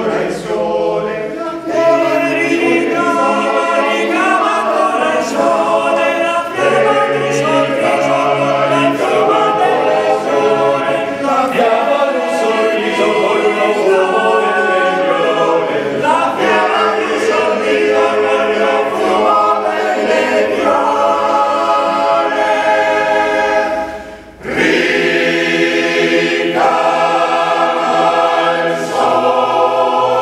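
Male-voice choir singing a cappella in several parts. The singing breaks off briefly about 24 seconds in, then the voices come back in together.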